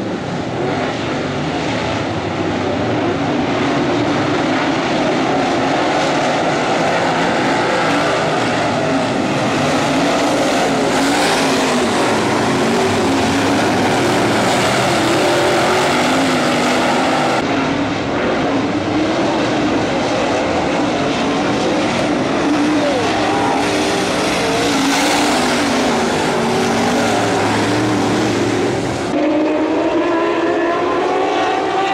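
Engines of a field of dirt-track race cars running at racing speed, several at once, swelling and fading as cars pass. The sound changes abruptly about two-thirds of the way through and again near the end, where the footage is cut.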